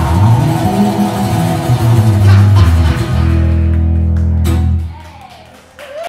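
Live acoustic guitar and electric bass playing the last bars of a song, ending on a held chord that rings for about two seconds and stops about five seconds in.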